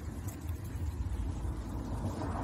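Low, steady outdoor rumble with no distinct events.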